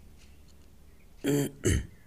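A man clearing his throat: two short rasping bursts in quick succession, a little over a second in.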